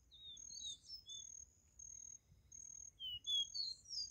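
Caboclinho, a Sporophila seedeater, singing short, descending whistled notes several times. Under it runs a high, steady insect trill that comes and goes in pulses.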